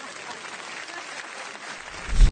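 Studio audience applauding, a steady patter of many hands clapping.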